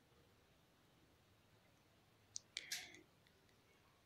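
Near silence, with a few faint clicks a little past halfway: a utensil tapping against the bowl as the salad is mixed.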